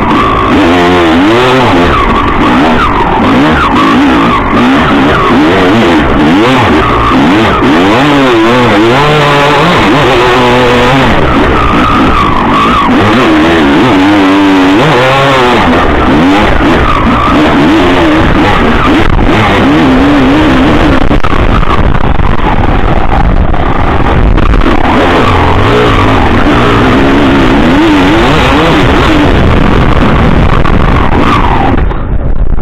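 Enduro motorcycle engine heard from onboard, loud, revving up and falling back again and again as the bike is ridden through soft sand.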